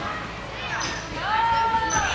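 Echoing background noise of a large gym hall with a few dull thuds, and a high voice holding one long 'ooh'-like note in the second half.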